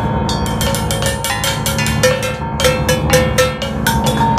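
Free-improvised piano and percussion duet: small cymbals, gongs and metal bowls laid flat are struck rapidly with sticks, several strikes a second, their ringing tones over the piano.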